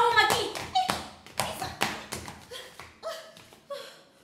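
A woman's short wordless cries and exclamations mixed with quick slaps and taps as she shakes and brushes at her body and clothes. The strikes come thickest in the first two seconds and thin out towards the end.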